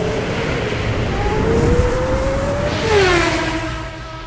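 Race car engine sound effect, the engine pitch rising as it revs, then dropping sharply with a rushing whoosh about three seconds in as the car passes by.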